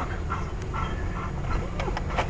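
A dog whining a few short times inside a moving car's cabin, over steady road and engine noise.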